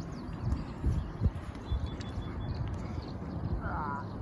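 A few hollow knocks and bumps of kayak paddles against plastic kayak hulls during the first couple of seconds, over a steady low rumble.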